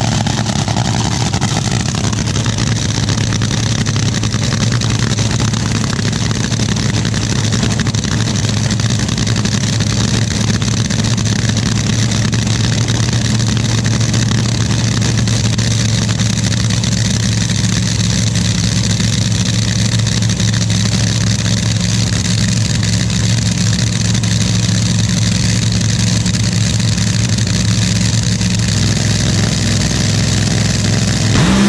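Top Fuel dragster's supercharged nitromethane V8 idling on the starting line, a loud, steady, even note that holds without revving.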